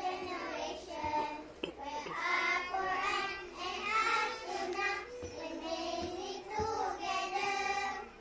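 A group of young children's voices in unison, performing a rhythmic choral recitation in a sing-song delivery.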